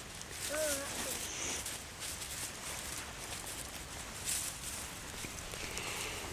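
Dry grass and reedmace (Typha) seed fluff rustling as hands work them into a tinder bundle, with a brief vocal sound about half a second in.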